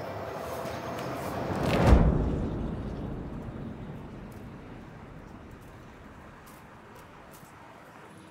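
Cinematic transition sound effect: a rising whoosh that swells to a deep hit about two seconds in, then a long rumbling tail that slowly fades away.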